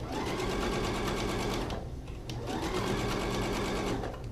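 Electronic sewing machine sewing a long-stitch basting seam through cotton fabric, in two runs with a short stop about two seconds in. Each run speeds up as it starts.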